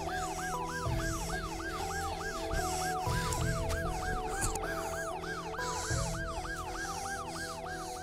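Tense dramatic underscore: sustained low chords with a fast, repeating rising-and-falling siren-like wail, about three sweeps a second, and a few held higher notes that step between pitches.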